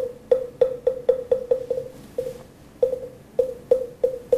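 Moktak (Buddhist wooden fish) struck in a run of hollow knocks, about four a second, with a short gap around two seconds in: the lead-in that marks the start of a Buddhist chant.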